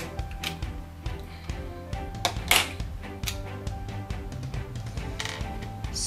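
Background music runs under irregular sharp plastic clicks as long blue Lego Technic pins are pushed into an EV3 brick. The loudest click comes about two and a half seconds in.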